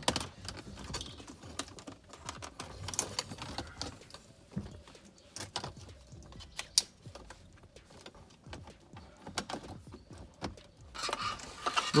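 Plastic centre-console trim pieces being handled and pressed back into place around the gear selector, making irregular light clicks and knocks.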